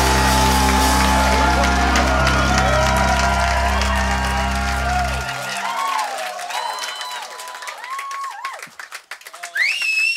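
A rock band's electric guitars and bass hold a final chord that rings steadily and then cuts off about five seconds in. A small crowd then cheers and whoops.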